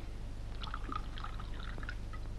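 Wine poured from a bottle into a small glass, faint, over a steady low hum.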